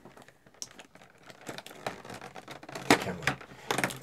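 Perforated cardboard advent calendar door being picked and torn open by hand: a run of irregular crackles and clicks, with the loudest snaps about three seconds in and near the end.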